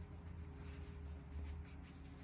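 Faint rubbing of a metal crochet hook drawing cotton yarn through stitches, over a low steady room hum.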